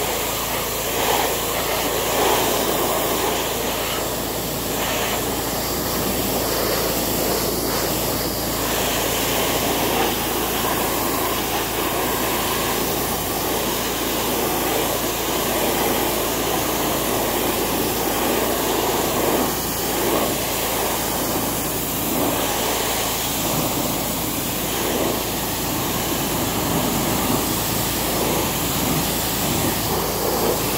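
Pressure washer jet spraying water hard against a zero-turn mower's deck and tires. It is a steady, continuous hiss with no breaks, blasting off mud and grass stains loosened by a soaked-on truck wash.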